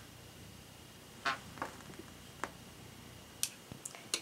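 A few light, sharp taps and clicks of a makeup brush and compact being handled, spaced irregularly over quiet room tone.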